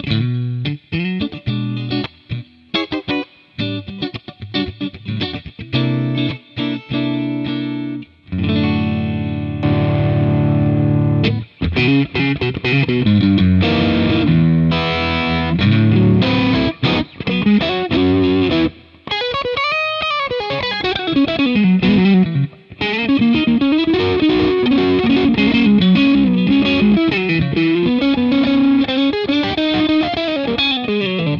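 Fender Custom Shop '57 Stratocaster Relic electric guitar played through an amp with the pickup selector in the number four position: short picked notes and chords at first, then sustained phrases with wide string bends rising and falling in pitch. The tone sparkles and shimmers.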